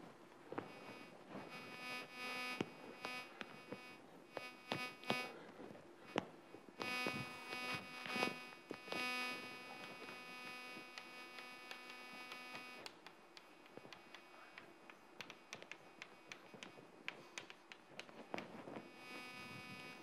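Faint chalk ticks and strokes on a blackboard as a lecturer writes, with an intermittent electronic buzz of several steady tones over the first two-thirds or so, the kind of interference hum a lecture microphone picks up.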